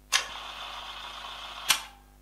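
Instant camera sound: a sharp shutter click, then a steady mechanical whir for about a second and a half, like a print being ejected, ending in another sharp click.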